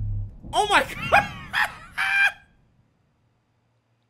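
A man's excited wordless yelps, about five short high cries rising and falling in pitch over two seconds, the last one held briefly, then silence.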